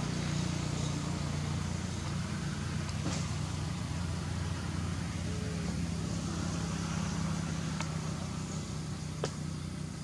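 A motor engine running steadily at idle, a continuous low hum, with a few sharp clicks over it.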